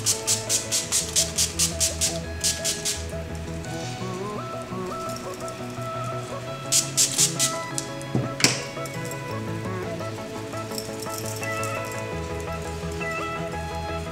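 Quick repeated pumps of a NYX Dewy Finish setting-spray bottle, about four spritzes a second for the first three seconds or so and another short run of spritzes about seven seconds in, over background music. A single sharp click follows shortly after the second run.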